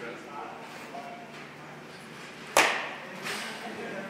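A baseball bat striking a pitched ball in a batting cage: one sharp crack a little over halfway through, followed by a fainter knock less than a second later.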